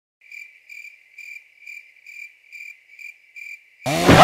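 Cricket chirping in a steady, even rhythm of about two chirps a second. A loud burst of sound cuts in at the very end.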